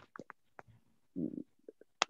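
A pause in a man's speech with faint mouth clicks and one brief, low voiced murmur about a second in.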